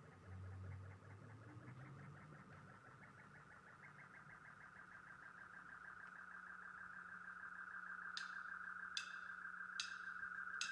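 Faint instrumental song intro building slowly louder: a fast pulsing high tone over a low steady drone, joined near the end by three sharp, bright strikes spaced under a second apart.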